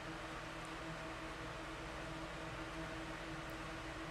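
Quiet, steady room tone: a faint hiss with a low, steady hum underneath.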